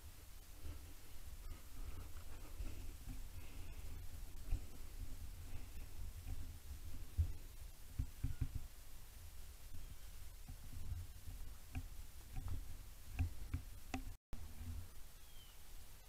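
Faint low rumble with scattered light clicks and knocks, the handling noise of a handheld camera outdoors. The sound drops out for an instant near the end.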